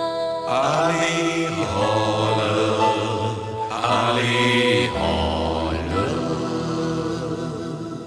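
Men's voices singing a chanted Vietnamese folk-style 'hò' phrase together over a band's held chords. There are two main sung phrases, about half a second in and about four seconds in, and the music begins to fade near the end.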